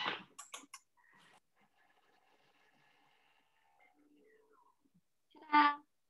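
A few light clicks, then a Thermomix chopping onion and garlic at speed 7 for about three seconds, heard only very faintly as a steady whir.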